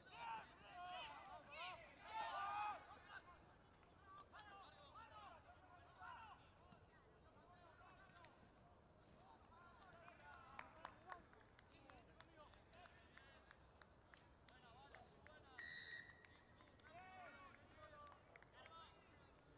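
Faint, distant shouting of players and spectators across a rugby pitch, loudest in the first three seconds, with a short referee's whistle blast near the end.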